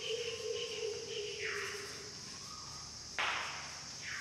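Chalk scratching on a blackboard as letters are written: short strokes about every half second, then a sharper, louder stroke about three seconds in.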